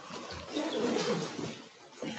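Indistinct laughter and voices in a small room, dying down near the end.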